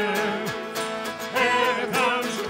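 Worship song sung with instrumental accompaniment, the voices carrying the melody over sustained chords.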